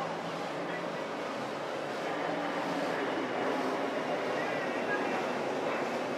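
Steady boat engine noise with indistinct voices over it.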